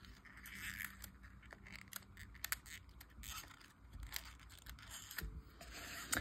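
Faint, scattered small clicks and light scraping as fine-tipped tweezers pick up and place small paper leaves on card stock.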